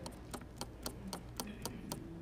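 Faint, even ticking, about four ticks a second.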